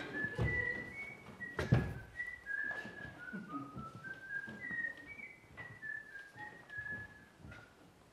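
A person whistling a tune of short held notes that step up and down. A few thumps come with it, the loudest a little under two seconds in.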